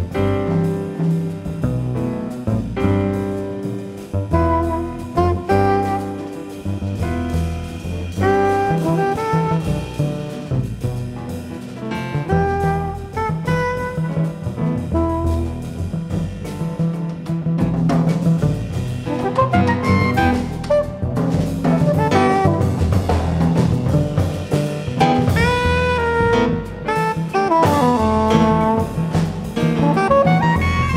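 A live jazz group plays: soprano saxophone over piano, two double basses and a drum kit. From about halfway through, the saxophone's lines become busier and climb higher, with quick bending runs.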